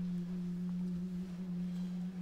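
Chamber choir holding a single low note in unison, steady and almost pure in tone.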